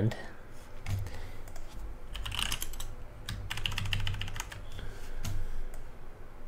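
Typing on a computer keyboard: scattered keystrokes, with a quick run of them around the middle.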